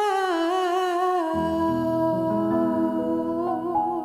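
A singer holding one long final note with vibrato, hummed or sung on an open vowel, as a soft piano chord comes in underneath about a second in and sustains.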